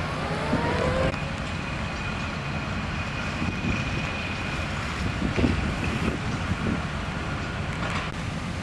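Fire engines running at a fire scene: a steady low engine rumble, with a thin, steady high whine from about a second in until about halfway through.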